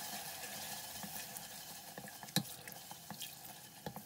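A wooden spatula stirring and scraping a thick tomato and onion sauce in a stainless steel pressure cooker, with a faint sizzle and a few light knocks against the pot, the sharpest a little past halfway.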